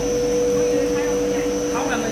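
HDPE blown-film extrusion line running at production speed: a steady machine drone with constant whining tones from its motors and air blower.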